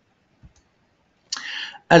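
A pause in a man's talk: a faint single click about half a second in, typical of a computer mouse click as the slide is advanced, then a short breathy noise like an in-breath just before speech resumes at the end.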